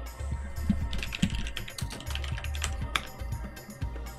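Computer keyboard typing, a quick run of keystrokes over about two seconds, over background music with a steady bass line.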